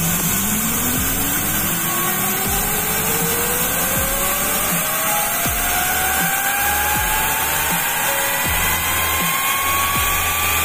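A homemade steam turbine spinning up, driving a 150-watt car radiator fan DC motor as a generator through a belt: a whine that rises steadily in pitch as the speed builds, over the hiss of escaping steam.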